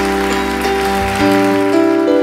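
Piano sound from a Yamaha MOXF8 keyboard playing slow, sustained chords of a ballad introduction, the chords changing every half second or so.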